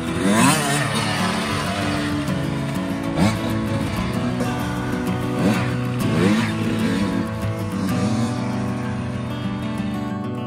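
Kawasaki 85 two-stroke dirt bike revving up several times as it is ridden, each burst a rising whine, the first and loudest about half a second in. Background music plays throughout.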